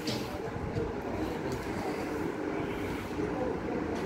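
Steady low background rumble with no distinct event.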